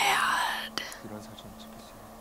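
A woman's short, breathy, half-whispered exclamation in the first second, then faint dialogue from the drama playing in the background.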